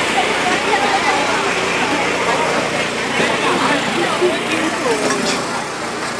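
Crowd hubbub: many voices talking at once around the microphone over a steady bed of city street noise.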